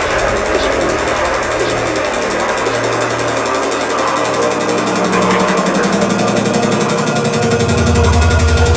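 Drum and bass track in a breakdown: the deep bass and kick fall back, leaving a noisy synth texture over a low held tone, which gives way to a higher held tone about five seconds in. The low end swells back in near the end, building toward the next drop.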